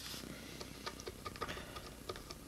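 Medium-gauge plastic guitar pick scraping at a solvent-softened sticker on a bass's gloss finish: a faint, irregular run of small ticks and clicks as the pick catches and lifts the sticker.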